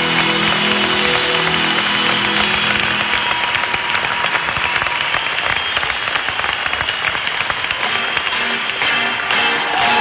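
Live arena concert heard from the audience: the band's closing notes die away in the first couple of seconds, giving way to loud applause and cheering from a large crowd. Instruments start sounding again near the end.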